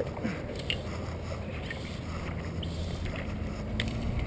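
A few faint clicks from a fly rod's line and reel being worked as a small sunfish is played in, over a steady low rumble that grows slightly louder near the end.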